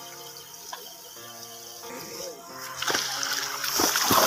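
Background music with long held notes, then about two-thirds of the way in, a loud rush of splashing water rises and voices begin shouting over it.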